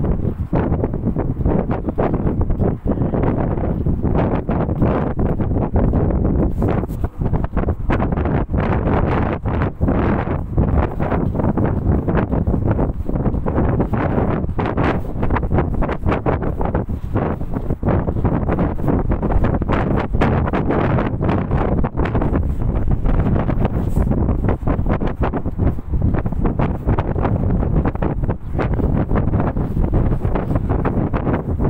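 Wind blowing across the phone's microphone: a continuous low rush that flutters and gusts throughout.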